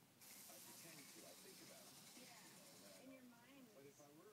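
Flip-dot display's dots flipping in a rapid sweep, a faint hissing rattle that starts just after the beginning and stops abruptly about three seconds in. The display is cycling at a speed fast enough to be usable.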